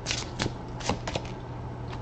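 A Fairy Tarot deck being shuffled by hand: several short, irregularly spaced slaps and riffles of the cards.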